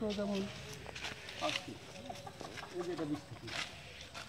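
Men's voices talking in a brief exchange, with a few short crunches of feet on dry leaf litter.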